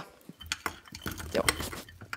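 Chunks of food and vegetable pieces sliding off a ceramic dish and dropping into a non-stick frying pan: an irregular run of small clicks and clatters, busiest about one and a half seconds in.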